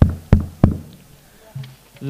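Rebana frame drums struck by the group together: three sharp hits in the first second, then a softer one near the end.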